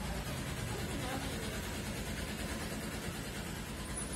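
A motor vehicle's engine running steadily, with faint voices in the background.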